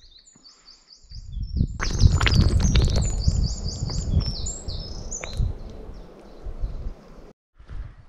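A songbird sings a run of short, high, repeated falling notes, over and over. From about a second in, a loud low rumbling noise on the microphone covers it, then dies away near the end.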